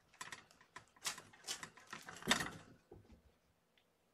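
Kittens playing: a quick, uneven run of clicks and rattles for about three seconds, loudest a little past halfway, then quiet.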